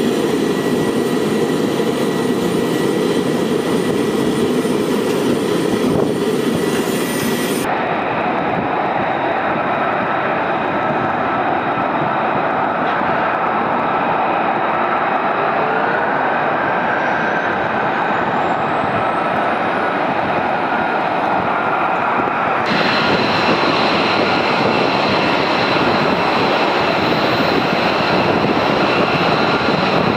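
Military jet engines running on a flightline: a steady loud roar with a high whine over it. The sound changes abruptly about eight seconds in and again a little past twenty seconds, and in the middle stretch a whine rises in pitch.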